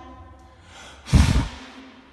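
One short, hard puff of breath blown out about a second in, hitting the microphone with a blast of air noise.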